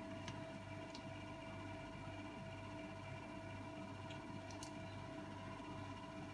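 Faint steady room hum with a constant tone, broken by a few faint light ticks.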